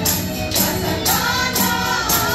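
A group of carolers singing a Christmas carol together to music, with a jingling tambourine-like beat about twice a second.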